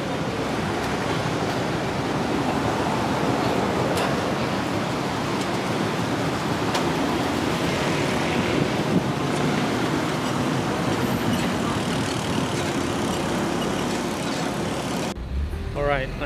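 Steady road-traffic noise from a city street, with no single vehicle standing out, cutting off suddenly about a second before the end.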